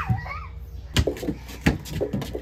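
A child's high voice, rising and falling, with two sharp knocks, one about a second in and one near the end.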